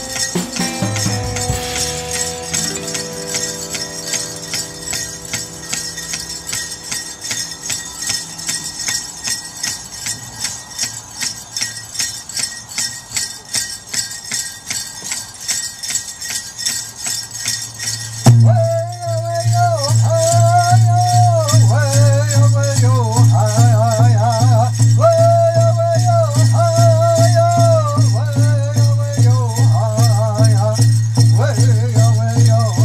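Powwow-style music with a steady beat and jingling bells. About 18 seconds in, a much louder, steady drumbeat and high, wavering singing come in.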